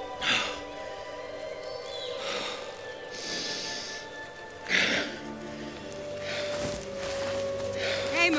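Film soundtrack: soft score music with long held notes, broken by a few short breathy sounds. The loudest of these comes about five seconds in.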